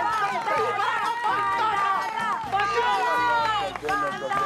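Several people cheering and shouting at once, with some hand-clapping, over background music.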